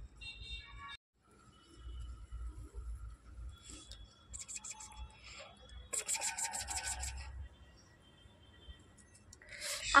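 Rubbing and scratchy rasping as a puppy mouths and chews on a person's hand, with a quick run of rasps about six seconds in.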